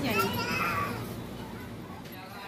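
Young children's high-pitched voices calling and chattering as they play. The voices fade out over the second half.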